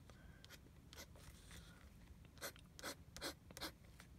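Fountain pen nib scratching faintly across a paint-sample card in short, irregular drawing strokes.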